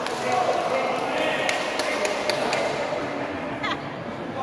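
Background voices of spectators and players in a reverberant sports hall between badminton rallies, with a few sharp taps past the middle and a short falling squeak near the end.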